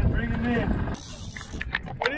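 Fishing reel cranked hard against a heavily bent rod as a hooked fish is brought up, a mechanical winding sound over a low rumble of wind and boat, with brief voices. About halfway through, the sound drops abruptly to a quieter stretch with a few sharp clicks.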